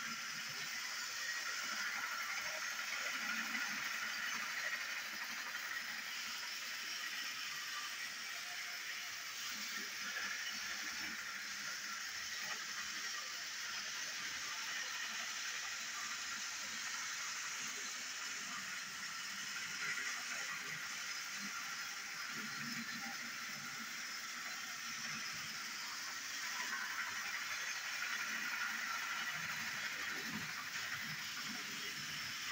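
Motorized toy train running around a plastic track: a steady high whirr of its small motor and gears with the rattle of its wheels and cars, swelling and fading a few times.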